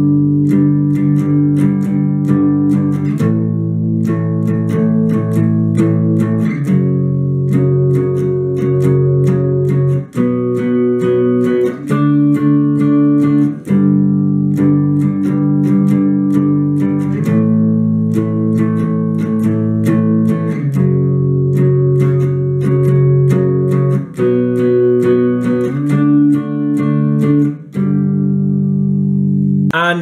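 Les Paul-style electric guitar strumming three-string power chords in a down-down-down-up-up strumming pattern, sliding between fret positions, with the chord changing every three seconds or so.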